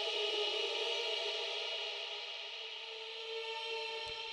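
Soft synth pad chord from the SunRiser synthesizer, played on a ROLI Seaboard Block: several notes held together with a bright, shimmering top, swelling slightly at first and then slowly fading.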